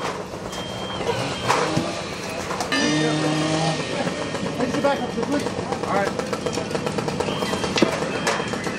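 Fire engine's diesel engine running steadily at a fire scene, with voices, a few sharp knocks and a held tone lasting about a second, about three seconds in.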